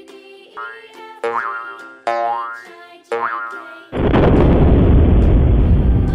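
Cartoon sound effects over a children's music track: three springy boings, each a short rising pitch, about a second apart. From about four seconds in they give way to a loud, steady rushing noise.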